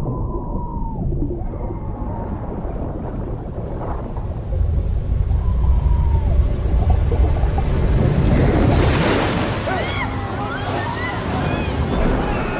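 Underwater sound in a film: a deep, muffled rumble of churning water and bubbles. About two-thirds of the way in it grows brighter and busier, with warbling, voice-like glides bubbling through the water.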